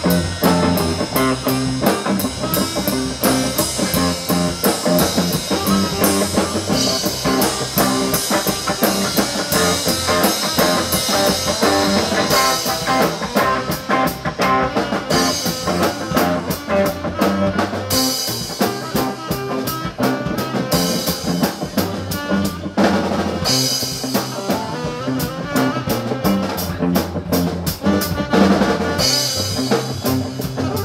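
Live band playing an instrumental jam: electric guitar and drum kit, with a saxophone playing lead.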